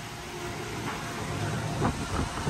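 Wind buffeting the phone's microphone on an open ship deck, a steady low rumble.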